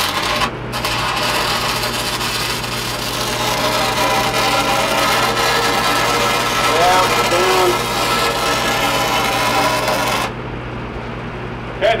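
Stick-welding (shielded metal arc) arc crackling and hissing steadily for about ten seconds while a tack weld is laid on a steel pipeline fitting. It cuts off abruptly when the arc is broken near the end.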